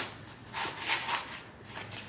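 Hand wrench being cranked to tighten a brake bolt: a click, then three short raspy strokes, each under a quarter second, in the first half of the clip.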